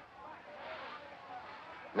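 Faint, muffled voices under a low background hiss.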